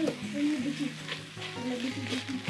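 Ground beef and vegetables sizzling in a hot stainless steel pot while a spatula breaks up the meat, with a few short scrapes and taps of the spatula against the pot. Soft background music plays underneath.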